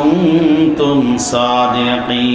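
A man chanting a Quranic verse in Arabic in a drawn-out melodic style, holding and bending long wavering notes. A short hissing consonant comes about halfway through.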